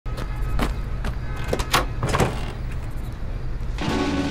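Street ambience over a steady low rumble, with cars whooshing past several times, then a door bursting open near the end.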